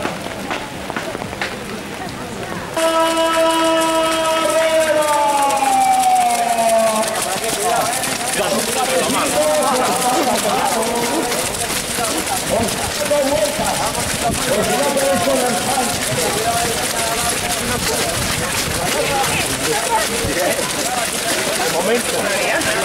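A race-start horn sounds about three seconds in: one held tone that then slides down in pitch over a couple of seconds. After it, a crowd of runners sets off with many footsteps on a wet path, amid a mass of voices.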